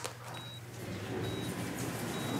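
Bedside patient monitor giving a short, faint high beep with each heartbeat, a little under once a second (a rate in the mid-60s), over a low steady hum.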